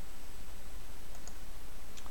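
A few faint computer mouse clicks over a steady low background hum.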